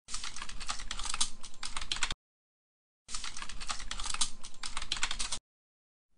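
Rapid keyboard typing clicks in two runs of about two seconds each, broken by about a second of dead silence.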